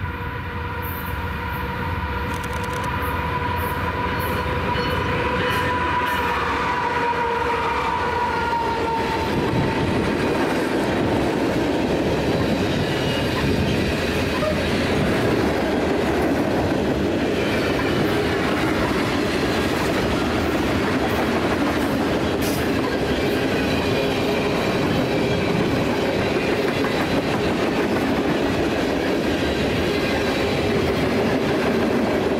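Freight train approaching and passing close by. The lead diesel locomotives come on with a steady tone that drops in pitch as they go past about eight seconds in. A long string of freight cars then rolls by with a steady rumble and clatter of wheels on rail.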